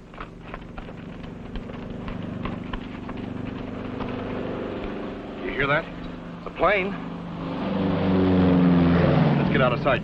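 Propeller airplane flying low overhead, its engine drone growing steadily louder over several seconds and loudest shortly before the end.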